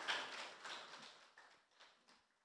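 Audience applause dying away: scattered hand claps that fade out about a second and a half in.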